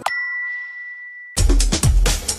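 A single bright chime struck once, ringing steadily for over a second, then cut off as loud electronic theme music with heavy bass beats starts.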